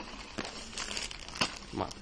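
Plastic packaging bag and paper crinkling as they are handled, with irregular crackles.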